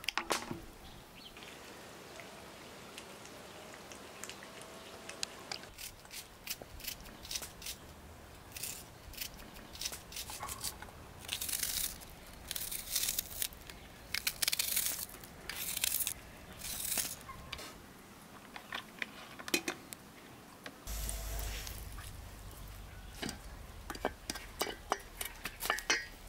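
A knock as a glass jar is set down in a metal pan. Then a long run of crisp crunching cuts as a knife goes through a raw onion held in the hand, with diced pieces dropping into a metal pot. Near the end a low steady hum sets in and a wooden spoon clicks against the pot while stirring the onion.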